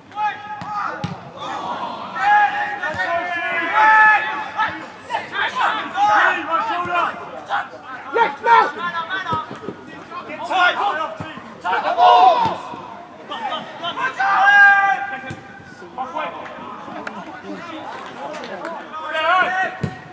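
Shouted calls from footballers and spectators at a football match, in short loud bursts throughout, with a few sharp thuds of the ball being kicked.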